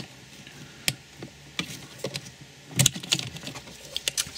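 Plastic multi-pin wiring connectors being wobbled and unclipped from a parking sensor control unit's housing after their locking tabs are pressed down. A few scattered sharp plastic clicks and knocks, with a cluster near three seconds in as the plugs pop free.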